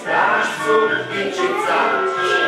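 A group of children's voices singing a song together over music, in held, melodic notes.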